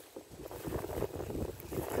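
Plastic bags rustling and crinkling as a hand rummages through a plastic box of wrapped betel nut supplies, with some wind buffeting the microphone.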